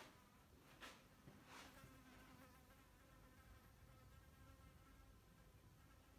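Near silence: room tone with a faint steady buzz and two soft bumps in the first two seconds.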